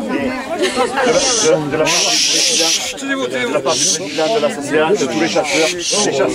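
Several people talking over one another in a group, with short hissing noises about one, two and four seconds in.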